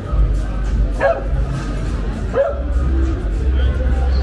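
A dog barking twice, about a second and a half apart, over background music and street chatter.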